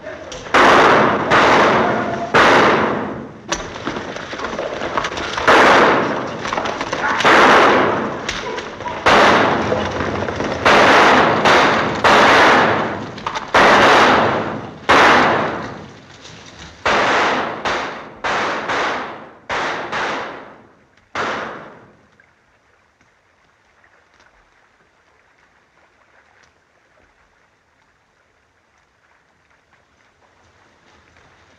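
Gunfire: about twenty shots fired in quick, irregular succession, each a sharp report with a trailing echo. The shooting stops abruptly about two-thirds of the way through.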